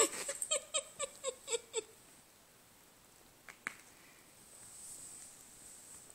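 Cat rummaging in a fabric bag, a quick run of short sounds about four a second in the first two seconds, then two soft clicks near the middle.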